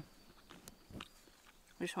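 Faint chewing with a few soft mouth clicks as a mouthful of food is eaten, before a woman's voice starts near the end.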